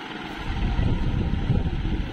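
A loud, choppy low rumble buffeting the phone's microphone, starting about half a second in and cutting off near the end, typical of handling or air noise on a handheld phone carried while walking.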